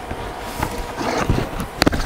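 Handling noise as a pneumatic nail gun and its air hose are picked up off a cardboard-covered worktable: rustling and scraping, with a couple of sharp clicks near the end.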